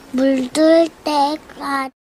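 A child singing in a high voice, four short held notes one after another, cut off sharply at the end.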